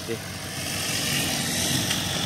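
A steady engine-like running noise that grows gradually louder, after a short spoken word at the start.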